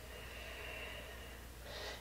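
A woman breathing faintly: one long breath over the first second and a half, then a shorter, louder breath near the end.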